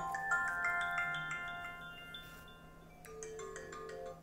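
A run of bell-like chime notes climbing in pitch one after another, each ringing on and fading away over the first few seconds. A few light clicks and a lower held tone come near the end.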